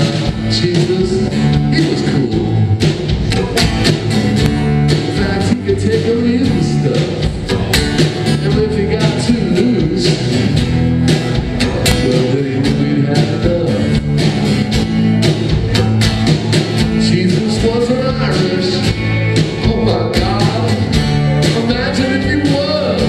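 Live rock band playing a mid-tempo song: strummed acoustic guitar, electric guitar, bass and drums keeping a steady beat.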